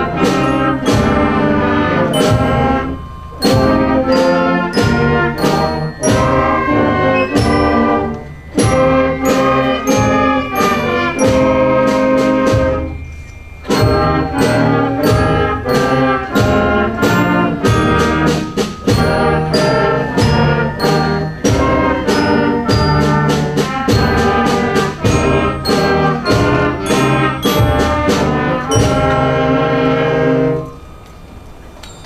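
Grade six concert band playing a chorale in C minor: sustained minor-key chords, mostly brass, in phrases with short breaks about 3, 8 and 13 seconds in.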